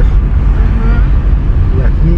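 Steady low rumble of a moving vehicle's road and engine noise, with a brief faint voice about a second in.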